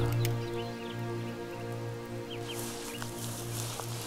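Soft film-score music holding a low sustained chord. A few short faint bird chirps come about two seconds in, and a light high hiss of outdoor ambience rises in the second half.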